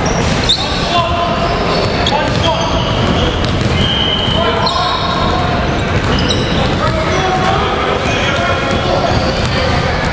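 A basketball bouncing on a hardwood gym floor during play, amid indistinct voices of players and onlookers, echoing in a large hall.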